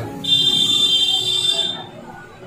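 A shrill, steady high-pitched tone, held for about a second and a half and then cut off.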